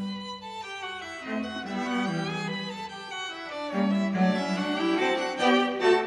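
Background music on bowed strings, violin and cello, playing sustained notes that change about once a second.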